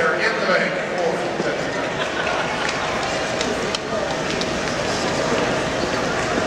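Steady hubbub of many voices in a gym hall, with roller skates rolling and clacking on the floor between jams.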